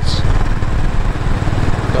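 Motorcycle engine running steadily at cruising speed, heard from the rider's seat, with a constant rush of road and wind noise.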